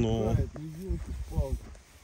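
A man's voice in short stretches of speech, fading out near the end, over a low rumble.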